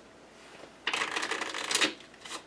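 A deck of playing cards being shuffled: one quick run of rapid card flutters lasting about a second, starting about a second in.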